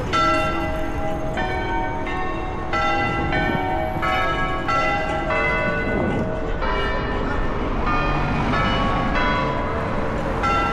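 Several church bells ringing in a peal, struck in turn at different pitches about every two-thirds of a second, over low street and traffic noise.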